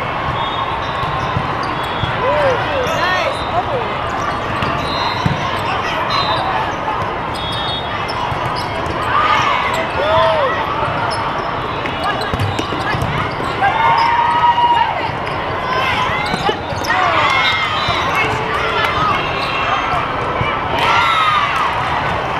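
Busy indoor volleyball hall during a rally: many voices, balls being hit and bouncing, and several short squeaks from the court floor.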